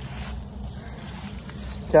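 Low, steady wind rumble on the microphone in an open field, with a man's voice starting right at the end.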